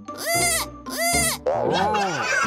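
A cartoon character's wordless voice: two short exclamations, then pitch-gliding vocal sounds near the end, over background music.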